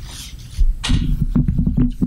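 Handheld microphone being handled: irregular knocks, thuds and rustles directly on the mic, starting about half a second in.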